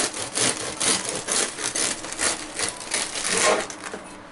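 Bread knife sawing back and forth through the crusty crust and crumb of a homemade wheat-and-rye cottage loaf, about three rasping strokes a second, loudest just before the slice comes free near the end.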